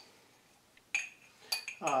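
Small glass jar clinking as it is handled: two sharp clinks with a brief ring, about a second in and again half a second later.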